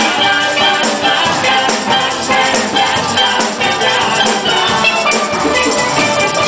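A steel band playing a tune, many steel pans struck together in a steady rhythm of ringing notes.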